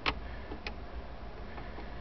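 Two light clicks about half a second apart over a low steady hum in a minivan's cabin.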